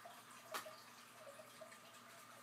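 Near silence with one short, sharp snap about half a second in: a small crunchy vanilla cookie being bitten in half.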